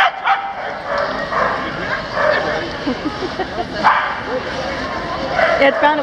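Several dogs barking and yipping in short bursts over the chatter of a crowd.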